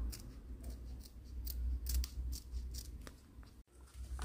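Scissors snipping through paper, an irregular run of short, quick cuts trimming around a small paper cut-out.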